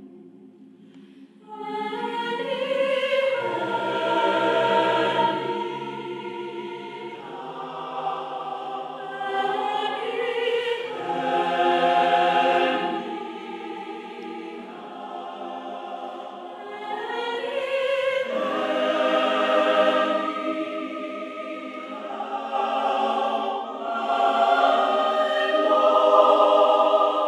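Mixed choir of men's and women's voices singing a slow piece in full harmony, coming in about a second and a half in and swelling and falling in long phrases.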